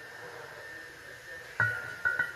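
Porcelain lid of a Qing blue-and-white double-happiness jar set back onto the jar's rim about a second and a half in: a sharp clink that rings briefly with a clear tone.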